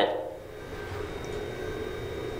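Low steady hum of an elevator car's interior, with a few faint steady tones.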